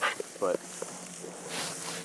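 Soft rustling and handling sounds of hunters standing in dry grass with a pheasant, a few small clicks, and a short hiss about one and a half seconds in.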